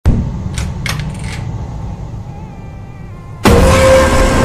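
Horror jumpscare sound effect: a low rumble with a few short metallic rattles that slowly dies away, then a sudden, very loud harsh blast about three and a half seconds in.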